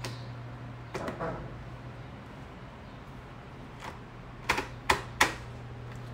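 Plastic visor of a full-face motorcycle helmet clicking through its detent positions as it is moved by hand. There are a couple of softer clicks about a second in, then three sharp clicks in quick succession near the end, over a steady low hum.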